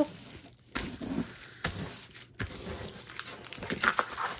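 Clear plastic sleeve of a rolled canvas rustling and crinkling in irregular bursts as hands smooth it flat and handle it.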